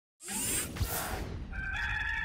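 A rushing whoosh sound effect, then a rooster crowing from about one and a half seconds in, a single held call: the crow of the South Carolina Gamecocks logo intro.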